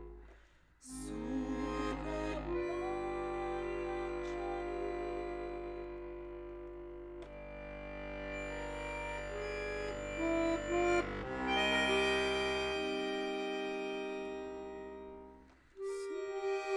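Chromatic button accordion playing a slow instrumental passage of sustained chords under a melody line. The sound drops away briefly just after the start and again just before the end.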